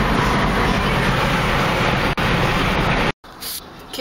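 Loud steady rushing noise inside a car cabin, cutting off abruptly about three seconds in.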